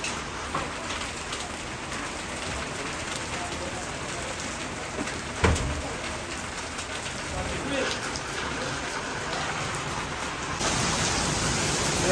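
Heavy rain falling steadily, a constant hiss of rain splashing on wet paving and puddles, with one sharp knock about halfway through. The hiss grows brighter and louder near the end.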